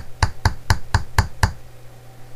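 Seven sharp, evenly spaced knocks, about four a second, stopping about one and a half seconds in, over a low steady hum.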